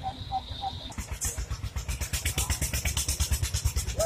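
A small engine running with a rapid, even pulse, growing louder from about a second in.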